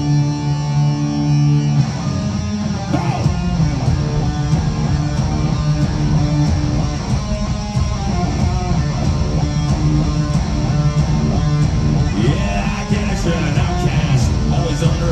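Rock band playing live through an arena PA: distorted electric guitars, bass and drums, loud and steady. Held chords give way to a busier riff about two seconds in.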